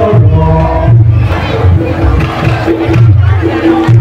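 Music accompanying a jathilan (kuda lumping) horse dance, with a deep drum beating and held pitched tones, mixed with crowd voices shouting.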